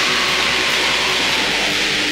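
Raw lo-fi black metal: a dense, steady wall of distorted electric guitar with bass and drums.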